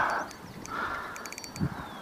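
A crow cawing once, after a short grunt from the angler at the start, with a quick run of faint clicks about a second and a half in.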